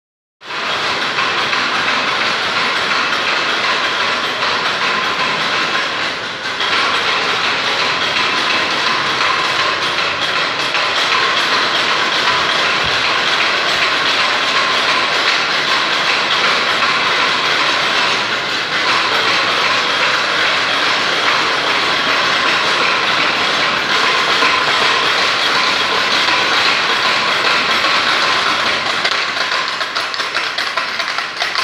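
A wooden ratchet clapper (matraca) rattling loudly and without pause, the clapper used in place of bells on Good Friday, with two brief dips in the rattling.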